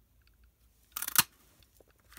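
One-inch square paper punch pressed down through cardstock: a short cluster of clicks about a second in, ending in one sharp snap as the square is cut out.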